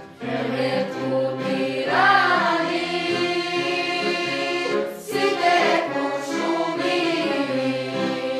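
Girls' voices singing a song from sheet music, one voice leading, over an accordion playing a rhythmic accompaniment with a violin. Short breaks between phrases come at the start and about five seconds in.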